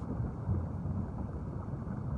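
A steady low rumbling noise, muffled, with no distinct tones or sudden events.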